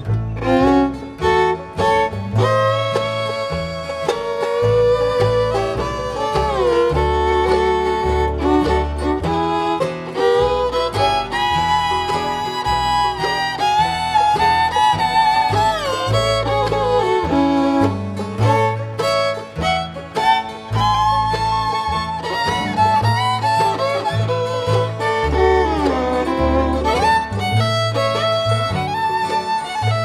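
Bluegrass fiddle playing a lead melody with sliding notes, backed by upright bass and guitar.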